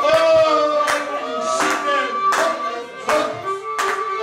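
Pontic lyra playing a lively tune, with a man's singing voice near the start and sharp hand claps in time, about one every three-quarters of a second.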